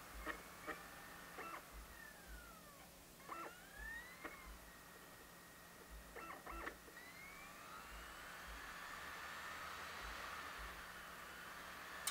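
Laptop DVD drive spinning up and seeking while it reads a boot disc: faint clicks and whines that glide up and down in pitch, then a rising whine about seven seconds in that settles into a steady hum as the disc comes up to speed.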